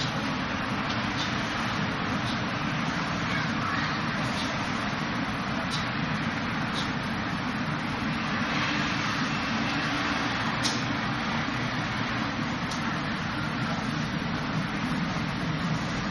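Steady rushing background noise with a few faint, short taps scattered through it.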